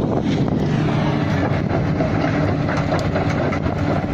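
Komatsu PC350 excavator's diesel engine running steadily under load, with a few metallic clanks around three seconds in.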